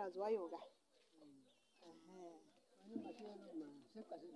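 A dove cooing with a few low, soft calls, under faint voices; a woman's voice trails off in the first moment.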